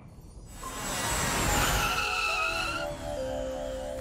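Cartoon rocket flight sound effect: a rush of noise builds about half a second in, with whistling tones through it, as a rocket flies and comes down onto the moon. Light music notes enter about halfway through and carry on under it.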